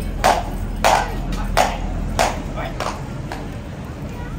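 Metal-shod hooves of a cavalry horse striking the stone floor of its sentry box: about six sharp, ringing clops, roughly one every half second, stopping a little after three seconds in. The horse is shifting and stepping restlessly in place.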